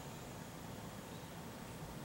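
Quiet, steady railway-platform ambience: a low rumble with an even hiss and no distinct event, while the electric train stands stopped.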